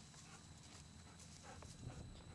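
Faint footfalls and rustling of a dog moving through low leafy ground cover close by, with a soft thump near the end.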